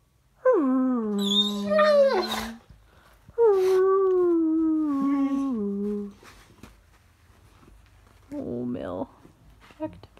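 A dog 'talking': two long, drawn-out howl-like vocalizations, each sliding down in pitch and then held on a low note, followed by a shorter one near the end.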